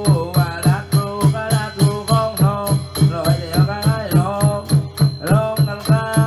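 Southern Thai Nora ritual music: a wavering, ornamented melodic line over a steady drum beat of about four strokes a second, with sharp metallic ticks from small hand cymbals or clappers keeping time.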